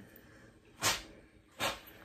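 Steam iron letting out two short hissing puffs of steam, under a second apart, while pressing a folded sweater-knit neckband.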